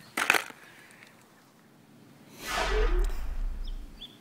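A brief clatter of tools being handled in a tool bag, then a louder whoosh that falls in pitch over a low rumble for about a second and a half near the end.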